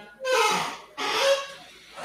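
A man's voice making two short, breathy vocal sounds about half a second apart, with no clear words.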